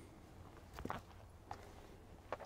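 Near silence, broken by a few faint short knocks or clicks, the clearest just under a second in and another about one and a half seconds in, over a faint low background rumble.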